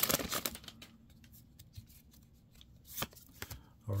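Trading cards being handled as they come out of an opened foil booster pack: a brief rustle of card stock and foil wrapper, then mostly quiet with a few faint clicks and slides of cards near the end.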